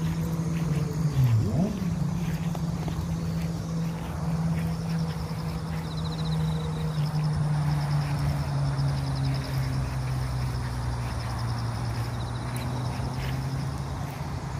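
A steady low engine drone, its pitch drifting slowly, with a quick dip and rise in pitch about a second in. Faint rapid high trilling comes and goes in the middle and again near the end.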